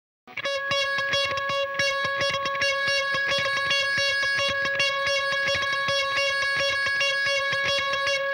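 Song intro on guitar: one held note rings steadily while short notes are picked rapidly and evenly over it, starting just after the opening moment.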